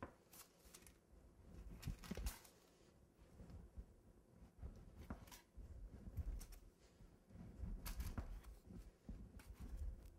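Long knife sawing through the bottom layer of a baked cake: faint, irregular scraping strokes as the blade cuts through crumb and crust, with a few soft low bumps.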